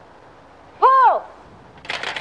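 A single drawn-out shouted call of "Pull!" about a second in, the loudest sound here, then a shotgun blast just before the end as a clay target is released for trap shooting.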